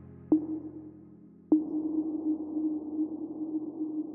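Closing bars of an electronic dance track: two single struck synth notes about a second apart, each ringing on as a low sustained tone. The second one holds on with a grainy texture.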